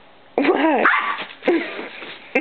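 Small dog barking in play at a cat, a quick run of short barks starting about half a second in and one more near the end.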